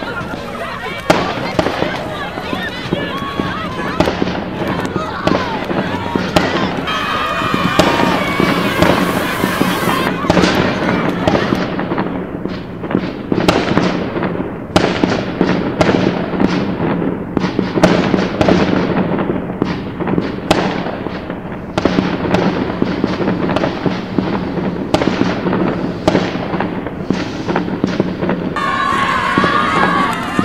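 Battle re-enactment gunfire: many musket shots cracking at irregular intervals, growing thick and rapid about a third of the way in, over a crowd of young voices shouting and hollering.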